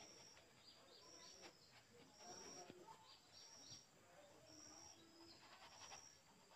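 A bird chirping faintly, one short high note repeated about once a second, with soft taps of a paintbrush dabbing on canvas.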